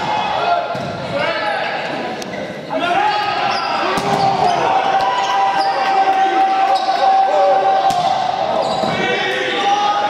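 A volleyball rally in a gym: several sharp smacks of the ball being served, passed and hit, with shouting voices echoing through the hall.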